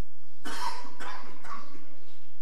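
A person coughing: one strong cough about half a second in, followed by two shorter ones.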